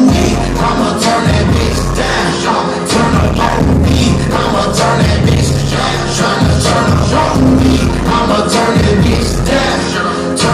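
Live hip hop beat played loud through a concert PA, heard from within the crowd, with a heavy bass line that drops out briefly a few times.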